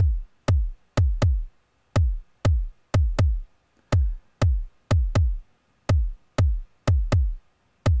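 Electronic drum-machine sample from the JR Hexatone Pro sequencer app playing a syncopated pattern at 122 bpm: short, deep thumps, each dropping quickly in pitch, about two a second with extra off-beat hits in between. The uneven rhythm comes from the app's oscillator taking probability-weighted paths across the hexagon grid and triggering the sample whenever it crosses a sound-making border.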